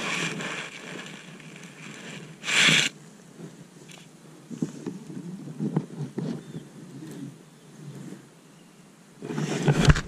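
Handling noise from a kayak angler working a baitcasting reel: low rubbing and scattered clicks while he reels. There are two brief loud rushes of noise, one about two and a half seconds in and one near the end.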